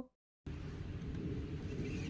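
Dead silence for the first half second, then a steady low outdoor background noise with a few faint ticks.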